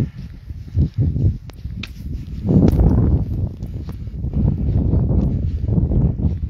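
A hiker's footsteps through snow: a run of low, muffled thuds picked up close on the microphone.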